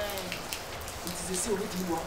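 Steady rain falling and spattering on surfaces, with a man's voice briefly near the end.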